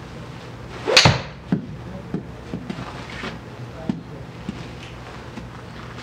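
Golf iron swung through and striking a ball off a simulator hitting mat about a second in: a quick swish and a sharp crack, the loudest sound. A smaller knock follows about half a second later, then a few faint knocks as the ball comes back off the screen and bounces on the turf.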